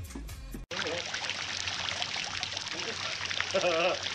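Water from a garden fountain splashing steadily, starting abruptly about half a second in, with a man laughing over it near the end.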